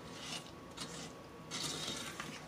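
Wooden spoon stirring a grainy sugar-and-water candy mixture in a pot, making faint, gritty scraping strokes against the pot, the longest near the end.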